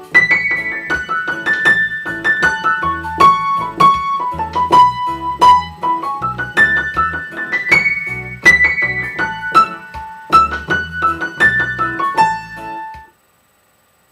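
A piano played high in the right hand: a quick improvised solo of single notes on the A major pentatonic scale, stepping up and down, over a backing track with a repeating bass line and a steady beat. The playing stops near the end.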